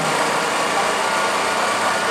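Steady street background noise: a constant hum and hiss with no distinct events.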